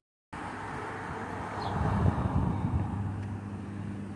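Street traffic: a motor vehicle passing, its noise swelling about two seconds in and then easing off. The sound cuts out for a moment at the very start.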